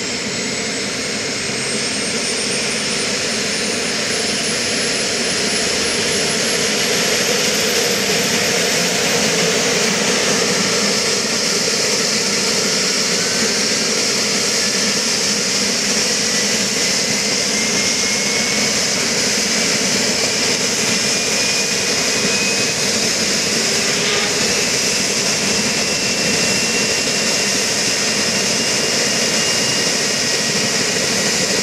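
BK 117 rescue helicopter running on the ground with its main rotor turning: the whine of its twin turbine engines and the whoosh of the blades. A high whine climbs steadily in pitch and the sound grows louder over the first several seconds, and a second, lower whine rises slowly later on.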